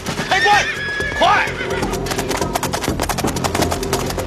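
A horse whinnies twice in the first second and a half over the fast clatter of galloping hooves. Background music and shouting voices run underneath.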